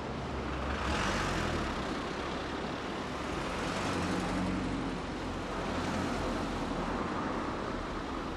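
Town street traffic: a steady wash of car and van engines and road noise, swelling about a second in and again near six seconds as vehicles pass close.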